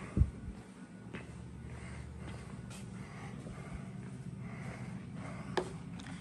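Quiet indoor room tone: a low steady hum, with one short thump just after the start and a faint click or two later on.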